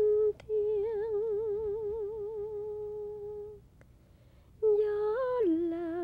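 Soundtrack music: a wordless voice humming long held notes with a wide vibrato. It breaks off for about a second midway, then comes back with a note that lifts and steps down to a lower one near the end.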